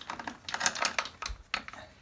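Slackened motorcycle drive chain on a KTM 690 Duke clicking and rattling against the rear sprocket as it is worked off by hand: a quick run of light metallic clicks lasting about a second.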